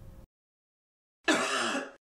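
A single human cough at normal speed, starting a little over a second in and lasting under a second before it cuts off abruptly. It is a normal, forceful cough.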